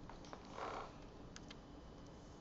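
Quiet room tone with two faint, short clicks about a second and a half in.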